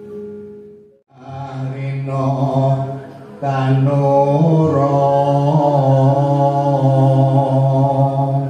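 A man singing Javanese macapat (tembang) solo into a microphone in long drawn-out held notes with slow wavering turns of pitch. The line breaks off briefly about a second in, then resumes and grows louder about three and a half seconds in.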